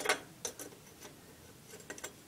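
Small sterling-silver jewelry parts clicking together as a piece is set onto its metal base: one sharp click at the start, then a few light, scattered ticks.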